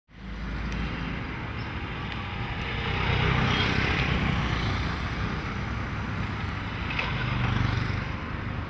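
City road traffic, with cars and auto-rickshaws passing close by. It is a steady noise of engines and tyres that swells as vehicles go past, about three seconds in and again near the end.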